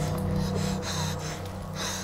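A man gasping for breath, several short ragged gasps, over a low droning music score.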